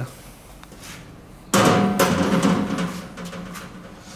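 Heavy outboard jet drive unit set down on a board: one loud clunk about a second and a half in, with a ringing that fades over the following second or two.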